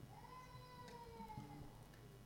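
A faint, high-pitched, drawn-out vocal call that rises, then slowly falls over about a second and a half, against near-silent room tone.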